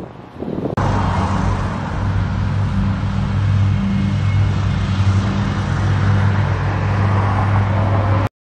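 A steady, loud motor drone with a low hum under a hiss, starting abruptly about a second in.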